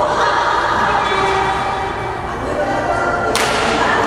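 A badminton racket striking the shuttlecock once, a sharp crack about three seconds in that rings briefly in the gym hall.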